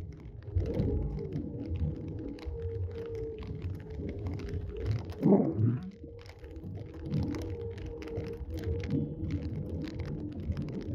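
Inside a car driving in rain: a low rumble of engine and tyres on the wet road with a thin steady hum, and many light taps of raindrops on the windscreen and roof. A louder swell comes about five seconds in.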